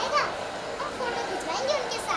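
High-pitched children's voices calling and chattering, in two short bursts, one at the start and one near the end, over background chatter.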